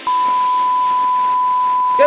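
One long electronic bleep at a single steady pitch, the standard censor-bleep tone, switching on and off abruptly over a faint hiss.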